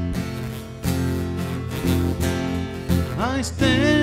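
Small acoustic band playing a slow country-folk song: electric bass and acoustic guitar with violin holding sustained notes. About three seconds in, a woman's voice glides up into the first sung line.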